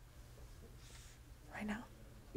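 Faint hum from an open microphone, with a brief quiet whisper about one and a half seconds in.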